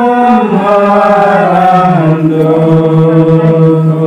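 A congregation singing a hymn together in long sustained notes. The melody slides down about halfway through onto a note that is held to the end.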